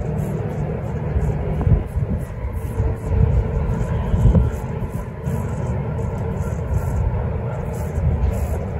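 Wind buffeting the microphone: a steady low rumble that swells in irregular gusts, strongest near two seconds in and again around three to four seconds.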